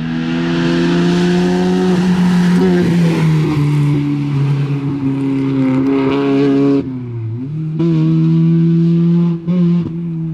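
BMW E30 rally car engine held at high revs at full speed. About seven seconds in, the note dips briefly, then climbs back.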